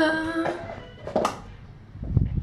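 A woman's voice holding a sung note on "ja", which ends under a second in, followed by a single short click about a second later.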